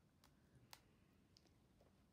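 Near silence, with two faint clicks about half a second apart as a page of a hardback picture book is turned by hand.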